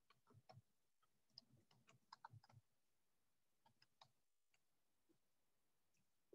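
Near silence, with a few faint, irregular clicks and taps in the first half and again around four seconds in.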